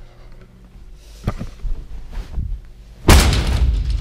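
A few soft thuds of footsteps, then about three seconds in a loud burst of rustling and thumping. This is handling noise as the camera is pushed into the pillows and covers of a bed.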